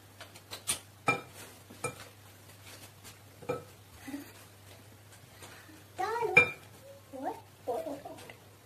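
A spoon clinking against a glass mixing bowl several times, a few sharp clinks in the first few seconds. Brief child's voice sounds come about six seconds in.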